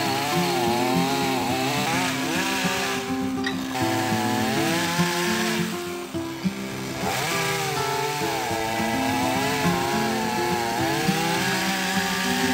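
Gasoline chainsaw cutting through a cork oak limb, its engine pitch rising and falling as the chain bites, easing off briefly twice. Background music plays under it.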